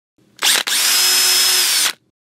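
An electric power tool motor running at speed: a short burst about half a second in, a split-second break, then a steady whine for over a second that cuts off suddenly.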